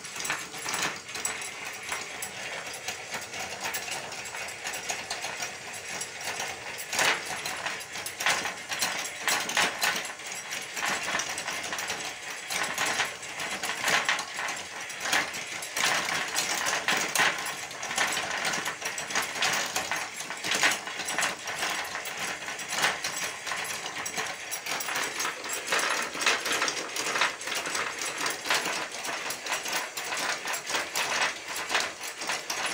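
Small geared electric motor turning a crank and linkage rod that drives a cart axle, giving a continuous run of ratcheting clicks and mechanical clatter.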